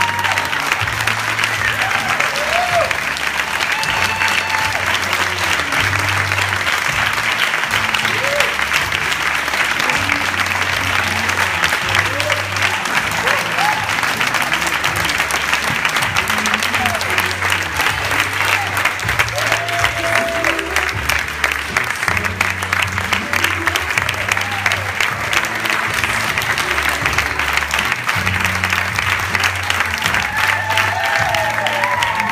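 An audience clapping continuously, over music with a steady, repeating bass line.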